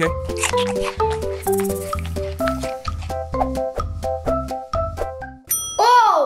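Background music with a steady beat and a repeating melody, with a bell-like ding near the end.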